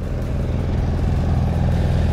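A small boat's motor running steadily under way, a low even drone, with a hiss of water and wind over it.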